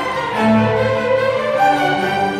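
Youth string orchestra playing sustained bowed chords on violins, violas and cellos, with a new, louder chord swelling in about half a second in.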